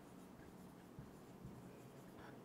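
Faint scratching of a marker pen writing on a whiteboard, with two light ticks of the pen against the board.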